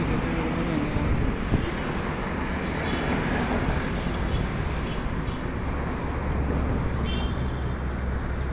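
City street traffic: a steady noise of passing cars and motorcycles, with a brief knock about a second and a half in.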